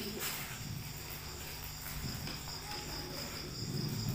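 Crickets chirping steadily in the background, a constant high-pitched trill over a low hum.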